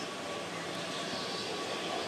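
Steady outdoor background noise, an even hum with no distinct events.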